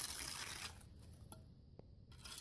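Hand trowel scraping and packing gritty concrete mix into a driveway crack: a rough scrape loudest in the first half-second or so, then quieter scraping, with a faint tap near the end.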